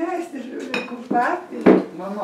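Small toy doll-house furniture clattering and knocking as it is handled and set against the wooden doll house, with one sharper knock near the end. A child's voice sounds faintly between the knocks.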